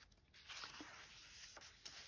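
Faint rustle of paper journal pages being turned by hand, with a few soft ticks.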